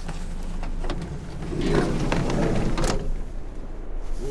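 Van engine running with a steady low hum inside the cabin, with rustling and handling noise as a gloved hand works the sliding door's inside handle, and a sharp clunk about three seconds in as the door is unlatched.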